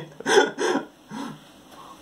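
A man's brief laughter in the first second, then faint fizzing as carbonated grape soda is poured onto the yerba in a mate gourd and foams up.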